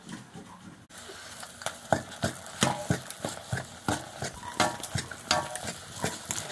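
A ladle stirring nettle curry in a metal pan over a wood fire, scraping and knocking against the pan about twice a second, over the curry's steady sizzling. It starts about a second in.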